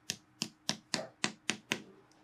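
Quick taps of a metal hammer face driving lasting tacks into a boot upper stretched over a last, about seven sharp strikes at roughly four a second.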